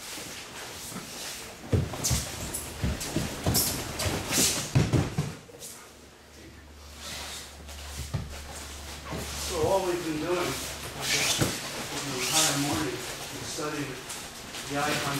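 A run of thuds and slaps from aikido breakfalls on the dojo mat in the first few seconds, then voices talking indistinctly.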